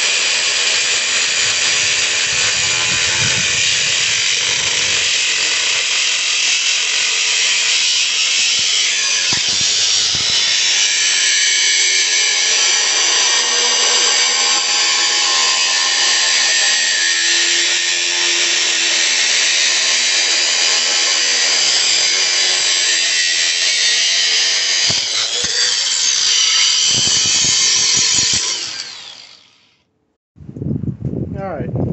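Angle grinder with a thin cutting disc cutting through a steel go-kart chain sprocket: a steady, loud, high-pitched grinding. The grinder stops near the end, its sound dying away over about a second as the cut is finished.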